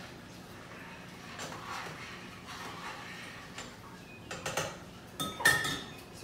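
A spoon stirring soup mix in a stainless steel pot of hot water, with scattered light clinks and scrapes against the pot, and a louder ringing clink near the end.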